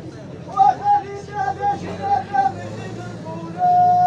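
A man's high voice singing in short, wavering phrases, ending on a long held note near the end, over a murmuring crowd.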